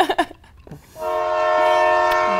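Steam-train whistle sound effect: a loud, steady, many-toned whistle that starts about a second in, after a brief laugh at the very start.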